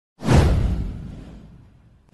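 Whoosh sound effect with a low rumble beneath it, starting suddenly a moment in and fading away over about a second and a half.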